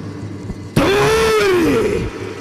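A performer's loud, drawn-out stage roar that starts suddenly about three quarters of a second in, rising and then falling in pitch over about a second.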